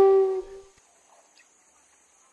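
Background music: a held flute note that fades out about half a second in, leaving near quiet with a faint high steady whine.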